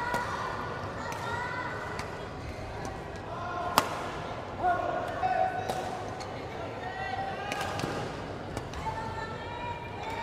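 Court shoes squeaking on a badminton court floor, with one sharp racket-on-shuttlecock hit about four seconds in.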